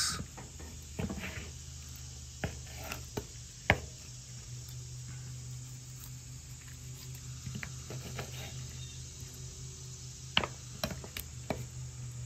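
Serrated knife slicing through grilled steak on a wooden cutting board, the blade knocking against the board now and then in sharp, scattered taps. A steady low hum runs underneath.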